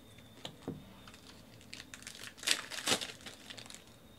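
A foil trading-card pack wrapper crinkling and tearing as it is ripped open by hand. A couple of light clicks come first, then a run of crackles in the second half, loudest in the middle.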